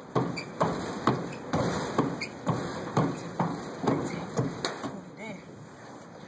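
Hands and feet slapping the planks of a bleacher walkway during a crawling drill, a sharp knock about twice a second, fading a little near the end.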